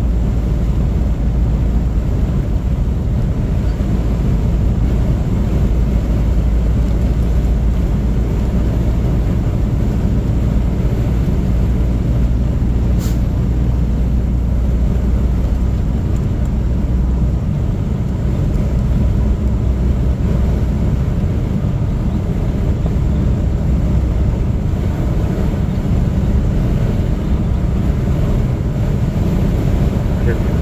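A car driving at road speed: a loud, steady low rumble of tyre and engine noise. A single brief tick comes about halfway through.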